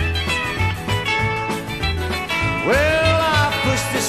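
Instrumental break in a 1960s country truck-driving song: the band plays a steady bass beat with guitar, and a sliding note rises about two-thirds of the way through, then eases down.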